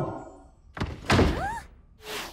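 Cartoon sound effect: a sharp click just under a second in, then a louder thud-like burst with a brief tone that rises and then falls.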